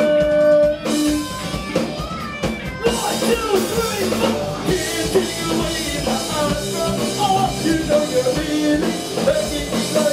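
Live rock band playing: electric guitars, bass and drum kit with a lead singer. After a held note and a brief thinner stretch, the full band with crashing cymbals comes back in about three seconds in.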